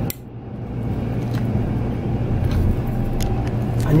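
A switch click, then the port diesel engine of a 1999 Viking 60 motor yacht starting. Its running sound builds over about the first second and settles into a steady idle.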